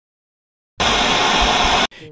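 About a second of loud static hiss, a white-noise burst that switches on suddenly and cuts off just as abruptly, after a stretch of silence.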